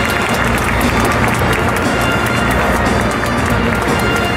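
Music played over a stadium's public-address system, with scattered clapping from the crowd and players mixed in.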